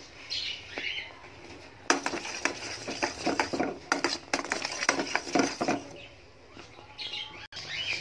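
A metal spoon scraping and clicking against a cooking pan as it stirs thick, bubbling jaggery syrup with peanuts and sesame, kept moving so the mix doesn't burn. The scraping is busiest in the middle and eases off near the end.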